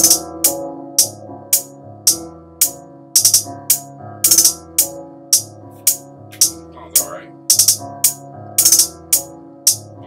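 A programmed trap hi-hat pattern playing back from the MPC software: crisp hi-hat hits about two a second, broken up by quick rolls of rapid hits about four seconds in and near the end. Some notes in the rolls are pitched down a semitone or more. Sustained synth tones sound underneath.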